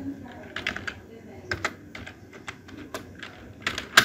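Computer keyboard being typed on: scattered single keystroke clicks, then a quick run of keystrokes near the end.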